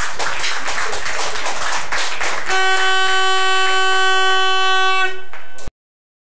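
Spectators clapping after a goal, then a horn blown in one steady note for about two and a half seconds. The sound cuts off suddenly near the end.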